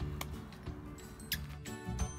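Background music with long held notes, and a couple of sharp clicks over it.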